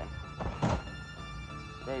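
Large cardboard shipping box being opened by hand: two dull cardboard thunks about half a second in as the flaps are pulled open.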